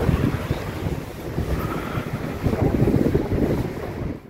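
Wind buffeting the microphone: an irregular, gusting rumble.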